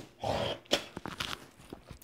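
A man's soft breath drawn in between sentences, followed by a few short mouth clicks and faint ticks close to the microphone.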